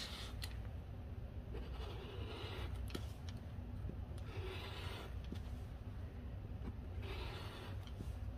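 Rotary cutter blade rolling through fabric on a cutting mat, trimming a seam allowance in three short, soft rasping passes.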